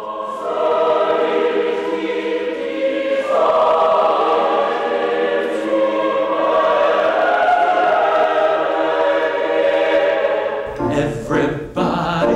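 Mixed choir of men's and women's voices singing held chords. Shortly before the end it cuts to different music with a keyboard and a band.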